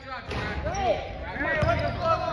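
A basketball bouncing on a hardwood gym floor, with low thuds about one and a half seconds in, and players' voices calling out, echoing around the hall.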